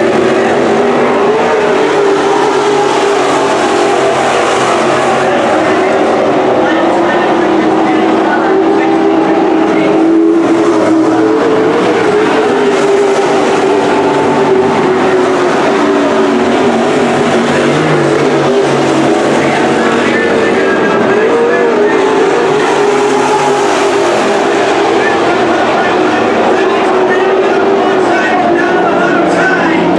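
A pack of Super Stock dirt-track race cars with V8 engines running laps together in a loud, continuous drone. Several engine notes overlap, their pitch rising and falling as the cars go through the turns.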